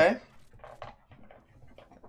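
A spoken "okay" at the start, then faint, irregular clicks and ticks of an online slot game's reel sound effects as a free spin runs and symbols land on the reels.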